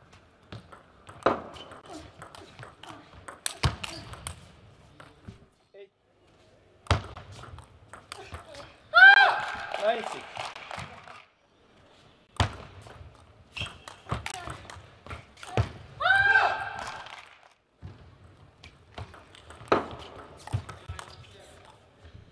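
Table tennis rallies in a large hall: the plastic ball clicking off rackets and table, with several hard knocks. A player shouts loudly about nine seconds in and again around sixteen seconds.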